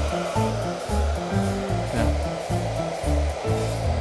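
Steady rush of a hot-air blower filling a very thin plastic sky-lantern bag, under background music with a repeating bass line.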